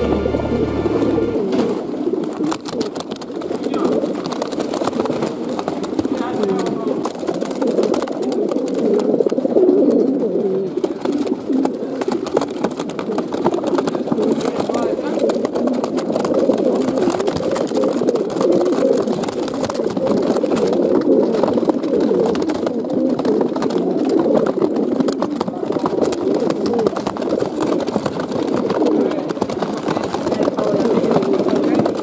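A large group of racing pigeons cooing together in transport baskets: many overlapping coos that blend into one continuous, steady sound.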